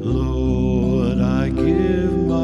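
Congregation singing a slow hymn with instrumental accompaniment, a low bass note coming in at the start and held.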